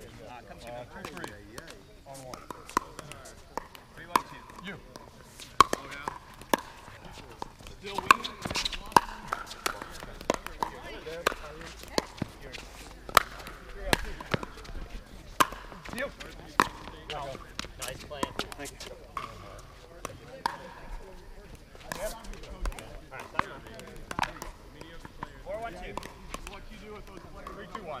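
Pickleball paddles striking a hard plastic ball in doubles rallies: a long series of sharp pops at an irregular pace, often less than a second apart.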